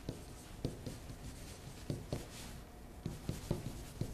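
A pen writing on a whiteboard: irregular light taps as the tip meets the board, with a short scratchy stroke about halfway through.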